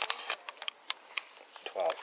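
A series of irregular sharp clicks and taps over faint hiss, with a few words of speech near the end.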